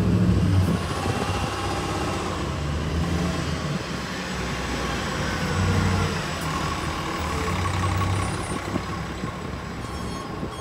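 Diesel engine of an Orion V transit bus, a low steady drone. It is loudest at the start as the bus slows in to the curb, then settles to idling, with the engine note swelling and easing a couple of times.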